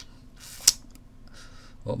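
A single sharp click about two-thirds of a second in, just after a short soft hiss, over quiet room tone; speech begins right at the end.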